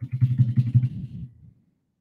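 A man's low, wordless vocal sound, like a hum or drawn-out murmur, lasting about a second and a half and fading out.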